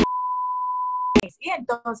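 A 1 kHz test tone, the broadcast bars-and-tone reference signal, held as one steady beep for just over a second and cut off sharply with a click. Speech follows.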